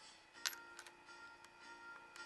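Faint instrumental backing music with a sharp click about half a second in, followed by a few lighter clicks.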